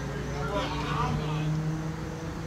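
Diesel engine of an MCI D4500 coach bus running as the bus pulls slowly away, a steady low drone.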